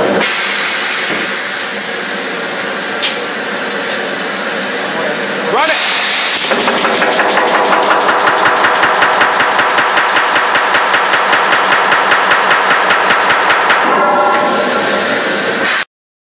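1880 Allen portable pneumatic riveter driving a red-hot 3/4-inch rivet into a boiler smokebox seam: a steady hiss of air at first, then from about six and a half seconds a fast, even rattle of blows for about seven seconds before it stops.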